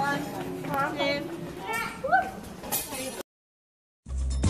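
Voices of people talking in the background, with no clear words, over low outdoor background noise; the sound cuts off abruptly shortly before the end.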